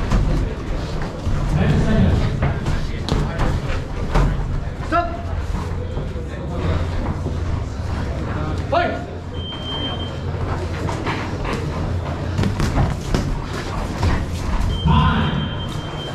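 Boxing gloves landing punches in a bout, a string of sharp thuds and slaps under shouting voices. A short electronic beep sounds about nine seconds in and again near the end, when time is called on the round.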